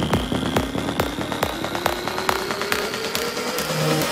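Progressive psytrance breakdown building up. The kick drum and bass drop out while a synth sweep rises steadily in pitch over quick ticking percussion.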